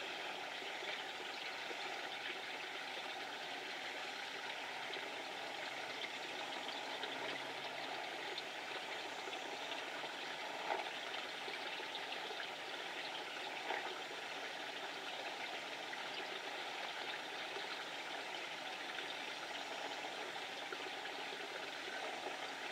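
Steady rushing noise like flowing water from a nearby stream, unchanging throughout, with two faint ticks about halfway through.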